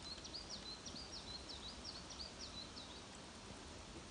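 A songbird singing a fast run of short, high, repeated notes, about four a second, that stops about three seconds in, over faint low background noise.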